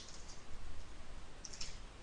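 Faint clicks of computer keyboard keys as a word is typed.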